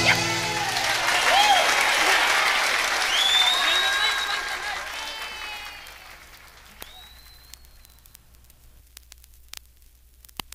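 Live audience applause and cheering, fading out over about six seconds. After it only faint scattered clicks remain, the surface noise of a vinyl record.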